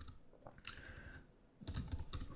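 Faint keystrokes on a computer keyboard, a few scattered clicks as text is typed.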